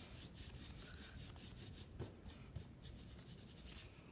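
A paintbrush dry-brushing over a painted wooden block: faint, quick scratchy strokes, about four or five a second, that stop just before the end.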